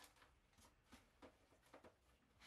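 Near silence with a few faint rustles and light clicks: shredded paper and plastic containers being handled in a cardboard parcel box.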